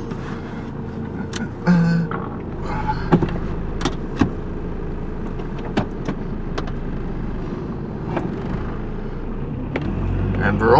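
Car engine idling, heard from inside the cabin, with scattered small clicks and knocks from handling the controls.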